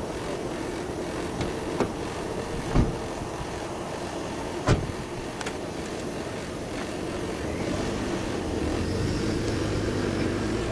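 Ambulance engine running, with a few sharp knocks, the loudest about three and five seconds in. The engine grows louder near the end as the ambulance pulls away.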